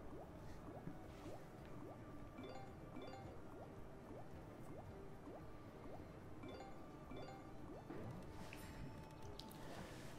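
Faint sound effects from an online video slot's rapid turbo autoplay spins. Short rising blips repeat about twice a second, with small clusters of high chiming ticks.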